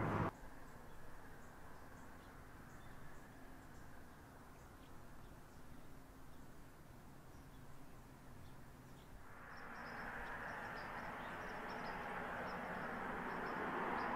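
Quiet outdoor ambience: a faint steady hiss that grows somewhat louder about two-thirds of the way through, with a scatter of faint, high, short chirps near the end.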